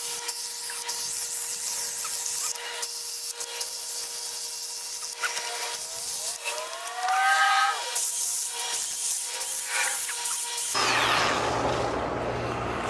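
Milwaukee M12 battery-powered cutting tool running with a steady electric-motor hum. Its pitch dips and rises for a second or two partway through as it cuts into the branches. It stops about a second before the end, and a rustling noise follows.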